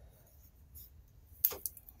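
Electrical tape being pulled from the roll and wrapped around a crimped wire connection: faint handling noise, a sharp snap about one and a half seconds in, then a few light ticks.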